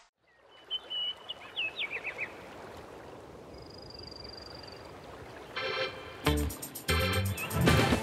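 Birds calling over a faint outdoor ambience: a few short chirps about a second in, then a thin high trill. Music comes in with short chord stabs about five and a half seconds in and a steady beat near the end.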